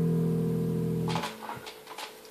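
Electric bass guitar played through an amplifier, several notes held and ringing steadily together, then cut off abruptly a little over a second in. A few faint clicks follow.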